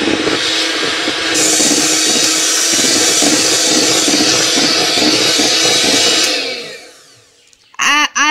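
Electric hand mixer running steadily with a humming motor, its twin wire beaters creaming butter and powdered sugar in a plastic bowl. About six seconds in it is switched off and winds down.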